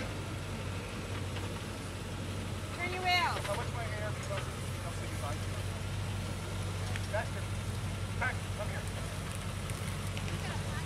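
Land Rover Discovery's engine running steadily at low revs as it crawls down a steep slickrock slope. A voice calls out briefly about three seconds in.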